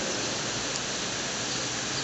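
Steady hiss of electric fans running and room noise.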